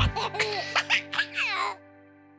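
A baby giggling in a quick run of short laughs over the fading held final chord of a children's song; the giggles and music stop shortly before the end.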